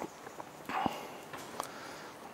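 Screwdriver turning small screws out of the metal cover plate of a Walbro diaphragm carburettor: a few scattered light clicks and a short scrape.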